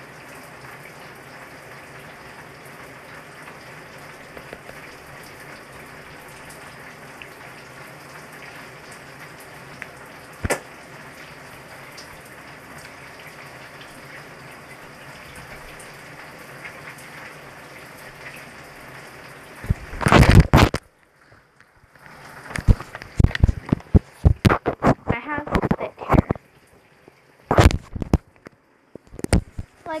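A steady, even hiss like running water for about twenty seconds. After that come loud rustling, scraping and knocks right at the phone's microphone, in irregular bursts with near-silent gaps between them.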